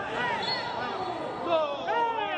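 Footballers shouting on the pitch: several overlapping high calls that rise and fall in pitch, loudest about a second and a half in.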